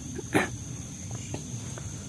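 A single short, sharp bark-like cry about a third of a second in, followed by a few faint clicks.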